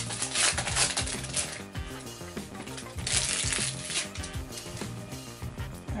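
Foil booster-pack wrapper crinkling as it is torn open, in two bursts: the first in the opening second and a half, the second about three seconds in. Background music plays underneath.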